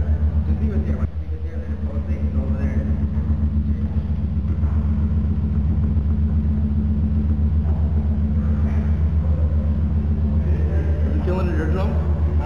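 Low bass drone from a subwoofer built into a sculptural coffee table, sounding through its ceramic vessel: a steady deep hum with a fast, even pulsing throb that dips briefly about a second in.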